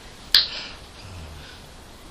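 A single sharp click about a third of a second in, over faint room tone.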